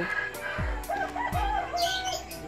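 A chicken calling about a second in, over background music with steady held tones and a low drum beat.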